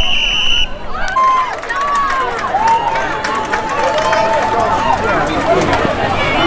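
A referee's whistle blows once, briefly, right at the start, then many people shout across the field, one voice holding a long call for a couple of seconds in the middle.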